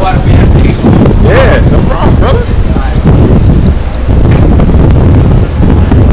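Wind buffeting a phone's microphone: a loud, continuous low rumble, with voices heard through it in the first couple of seconds.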